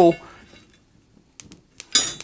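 Steel fire rake clinking against lumps of coal in a forge: a few short sharp clicks about a second and a half in and again just before the end, with near quiet between.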